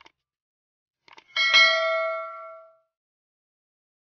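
Subscribe-button animation sound effect: a couple of quick mouse clicks, then a single bell chime that rings out and fades over about a second.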